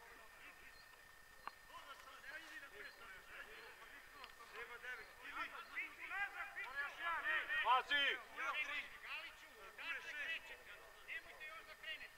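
Distant men's voices shouting and calling across an open football pitch, several at once, building from about five seconds in and loudest around eight seconds.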